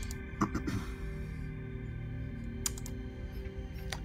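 Low background music of steady sustained tones, with a few sharp clicks: a small cluster about half a second in, and single clicks near three seconds and just before the end.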